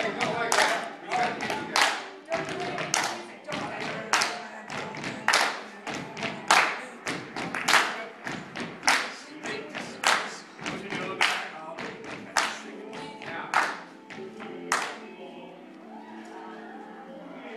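A group clapping and stamping in rhythm, a strong hit about every 1.2 seconds with lighter ones between, over voices singing or chanting along; the hits stop near the end.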